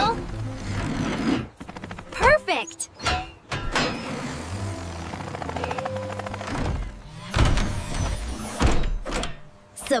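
Cartoon sound effects of a heavy steel beam being set against a concrete wall as a support: a run of thunks and clanks, then heavy low thuds in the last few seconds, over background music.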